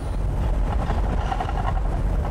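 Car driving along a dirt road, heard from inside the cabin: a steady low rumble of engine and road noise.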